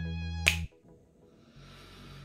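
A single finger snap about half a second in, over sustained background music chords that cut off right after it; then a second of near silence and a faint low hum.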